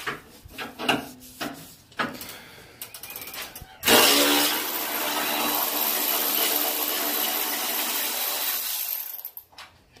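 Light metal clicks and knocks as a socket is fitted to a fender bolt, then an air ratchet runs steadily for about five seconds, spinning the bolt out, and stops.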